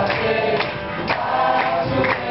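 A group singing a mantra together, with percussion keeping a steady beat about twice a second.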